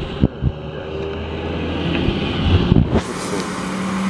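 Road traffic passing: a steady engine and tyre noise that swells a little past halfway, with a couple of short knocks in the first half second.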